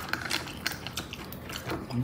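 Close-up chewing of fried breaded chicken nuggets: a string of irregular, short crunchy clicks from the mouth.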